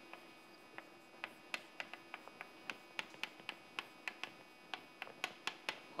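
Chalk on a blackboard while words are written: a quick, irregular run of faint clicks and taps, about three or four a second.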